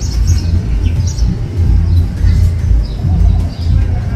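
Small birds chirping in short bursts over a loud, gusting low rumble of wind on the microphone.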